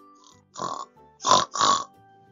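A pig's oink, given as three short, noisy grunts in quick succession, the last two the loudest, over soft children's background music.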